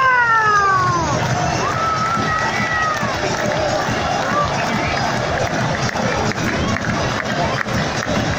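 Football stadium crowd cheering a goal: a long drawn-out shout falls in pitch at the start and a second held shout follows, then a steady dense crowd noise.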